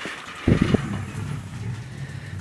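A lion at close range makes a short loud low grunt about half a second in, then a steady low rumbling purr.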